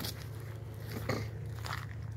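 Faint footsteps crunching on a gravel path strewn with dry fallen leaves, a few separate steps over a low steady hum.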